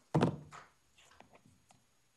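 A single loud thunk just after the start, dying away within about half a second, followed by a few faint ticks.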